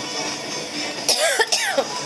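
A short burst of a person's voice without words, about a second in, over a steady background hiss.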